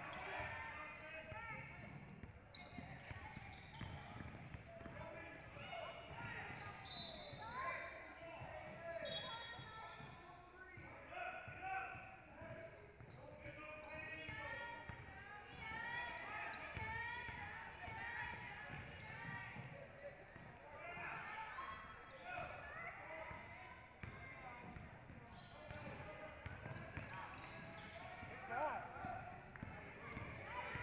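A basketball dribbled and bouncing on a hardwood gym floor, with short impacts scattered throughout. Players' and onlookers' voices call out indistinctly the whole time.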